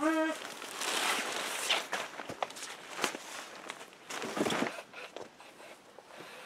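Plastic wrapping and the vinyl of a new air mattress rustling and sliding as it is unpacked and spread out, in a few irregular bursts with some light knocks.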